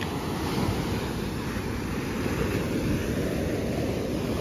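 Ocean surf breaking on a sandy beach: a steady, low rush of waves from a rough sea.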